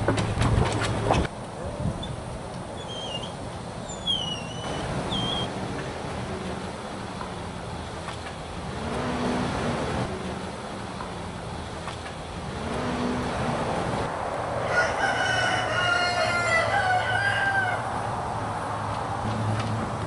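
Outdoor yard ambience: a rooster crowing for a few seconds in the later part, over a steady low hum, with small birds chirping briefly a few seconds in and a short clatter right at the start.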